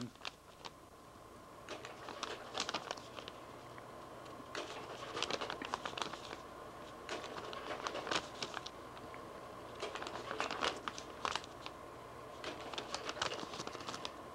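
Irregular crackling and rustling clicks, like paper or plastic being handled, coming in clusters every second or two over a steady faint electrical hum.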